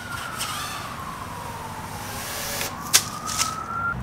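FPV racing quadcopter's motors whining, the pitch sliding slowly down for about two and a half seconds and then climbing back up near the end, with a sharp click about three seconds in.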